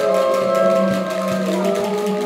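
Didgeridoos playing a steady drone, with overtones shifting in pitch above it.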